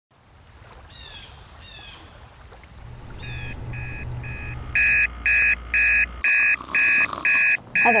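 Alarm beeping steadily at about two beeps a second, soft at first from about three seconds in and loud from about five seconds in, as a wake-up alarm going off beside a sleeping woman. Before it, a bird gives two short falling chirps.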